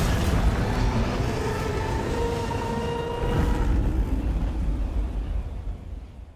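Low, rumbling drone of trailer sound design under the closing title cards, with a faint held tone in the middle. It fades out near the end.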